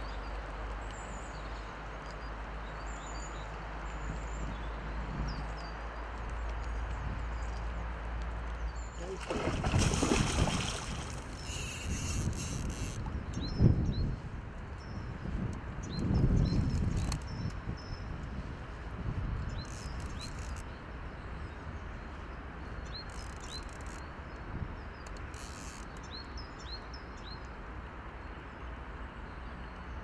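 Riverside outdoor ambience: a steady low rumble with small birds chirping in short repeated calls. From about nine seconds in come several louder bursts of noise, the loudest a sharp one near fourteen seconds.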